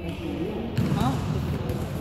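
Basketball bouncing on an indoor court floor, one sharp bounce a little under halfway in.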